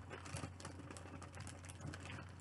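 Faint, scattered clicks and light rustling of a small plastic novelty pin and its packaging being handled, over a low steady hum.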